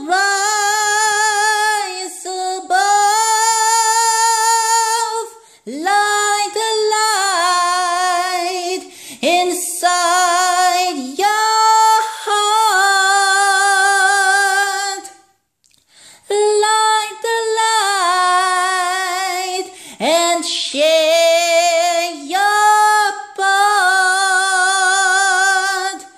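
A cappella solo voice singing long, held notes with vibrato, with short breaths between phrases and one brief pause midway.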